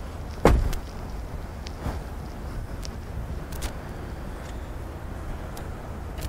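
A single solid thump of a car body panel being shut about half a second in, then a few faint clicks over a low steady rumble.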